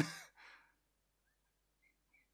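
The end of a man's spoken word, followed by a short soft breath out, then near silence.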